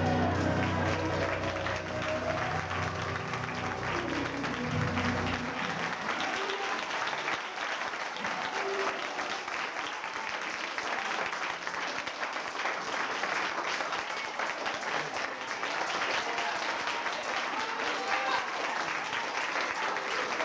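A recorded gospel song playing, ending about five seconds in, followed by a congregation clapping steadily.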